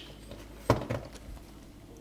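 Plastic glove box latch parts being handled and set down on a tabletop: one sharp click, then a few faint ticks.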